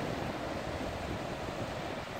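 Steady wash of small surf splashing over a rock shelf on a calm sea, with wind rumbling on the microphone.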